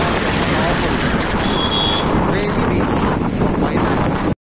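Wind rushing over a phone microphone on a moving motor scooter or motorcycle, a steady loud roar of noise with road traffic underneath.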